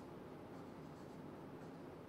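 Marker pen writing on a whiteboard: a few short, faint strokes of the tip across the board.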